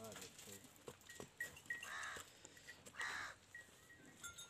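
Short pitched animal calls, two of them about a second apart in the second half, with faint thin bird chirps in between and a lower call at the start.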